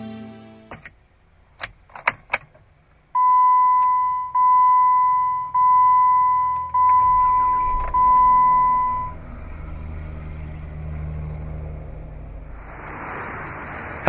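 Brief end of intro music, a few clicks, then the Jeep Wrangler's dashboard warning chime dinging five times, about one ding a second. Near the last ding the 3.6-liter Pentastar V6 starts and settles into a steady idle.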